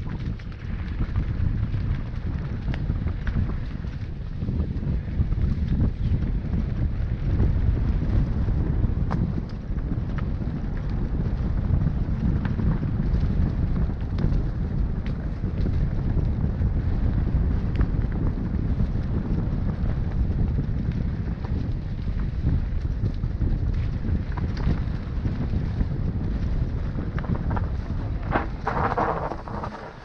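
Wind rumbling on an action camera's microphone while riding a mountain bike along a bumpy dirt trail, with scattered clicks and rattles from the bike. The rumble dies down near the end as the ride stops.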